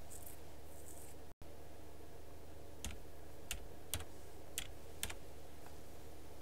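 About five separate computer keystrokes, roughly half a second apart, in the second half, over a steady low electrical hum. The sound cuts out for an instant about a second and a half in.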